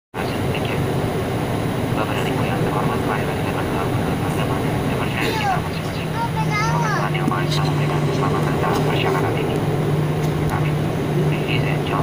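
Cabin noise of a jet airliner heard from a window seat while it taxis: a steady engine hum and rumble, with the hum growing stronger about halfway through. Voices of people in the cabin are heard over it.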